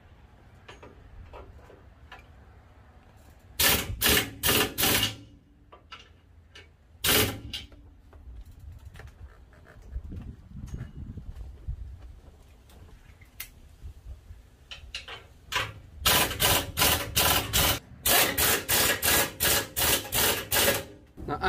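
Air impact wrench running in short bursts, driving bolts on the truck's front bumper brackets: a group of four bursts about four seconds in, a single one near seven seconds, and a fast run of many bursts in the last four seconds.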